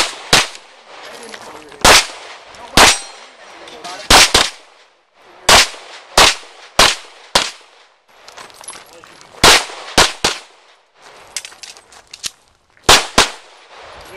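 A string of about fifteen handgun shots, sharp cracks fired singly and in quick pairs roughly half a second apart, with pauses of about a second between bursts. A few fainter cracks come a little after the middle.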